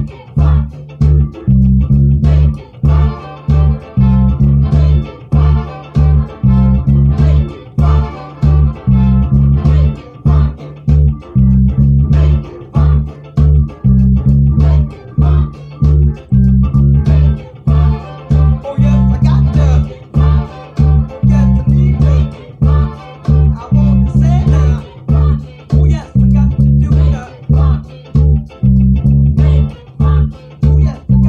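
Fretless electric bass guitar played with the fingers, a repeating syncopated funk line with short gaps between phrases. Underneath is a funk record with drums.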